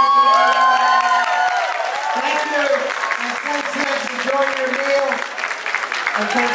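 Audience applauding, with voices rising and falling over the clapping, loudest in the first couple of seconds.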